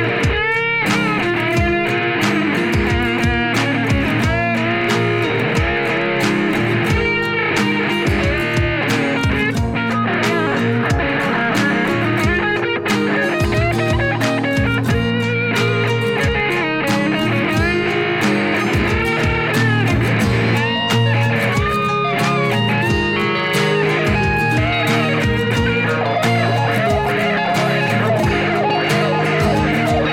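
Fender Custom Shop Stratocaster electric guitar with Fat '60s single-coil pickups playing a rock/blues lead line through effects pedals, with bent and wavering notes, over a steady backing with low sustained notes and a regular beat.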